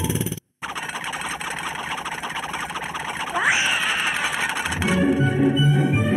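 Cartoon sound effects after a brief cut: a dense, noisy rattle with a rising whistle-like glide about three and a half seconds in that holds high for about a second. Bouncy music comes back in near the five-second mark.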